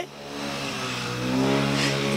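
A road vehicle's engine accelerating on the street, rising in pitch and growing louder over the first second and a half, then holding steady.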